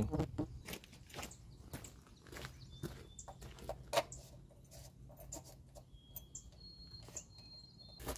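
Scattered light clicks and knocks of hands working at a fuel cap on the side of a JCB 330 skid steer loader, with faint high bird chirps near the middle and end.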